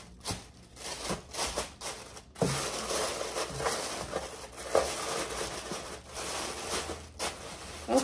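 Paper crinkling and rustling as it is handled, with a few brief sharp clicks.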